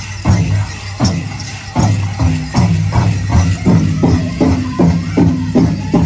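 Pow wow drum group singing a grand entry song over a big drum beat that settles to about three strikes a second in the second half, with the metal jingling of the dancers' regalia.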